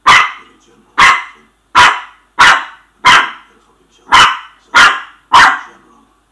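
Shih Tzu puppy barking: eight sharp, loud barks, each less than a second after the last.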